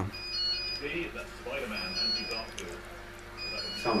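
Care-home call-cord alarm sounding: a short electronic pattern of several high beeps repeating about every second and a half, the signal that someone has pulled an alarm cord and is calling for staff.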